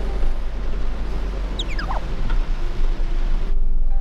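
A camper van driving on a rain-soaked road, heard from the cab: a steady low drone with an even hiss of tyres and rain. About one and a half seconds in, a brief whistle falls steeply in pitch. The noise cuts off sharply just before the end.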